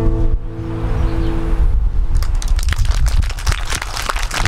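Nylon-string classical guitar's last chord ringing out and dying away over the first second and a half, followed about two seconds in by a dense patter of hand-clapping.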